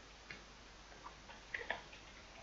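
A few faint computer keyboard keystrokes, single clicks spaced apart, with two in quick succession about one and a half seconds in.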